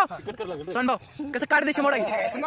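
Men talking in Marathi, with a thin, steady high-pitched cricket trill behind the voices that stops about a second and a half in.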